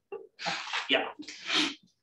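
A man's breathy laughter in three short exhalations, mixed with a spoken "yeah".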